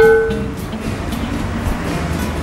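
Background music with a steady low rumble. It opens with the tail of an edited sound-effect tone that fades out within about half a second.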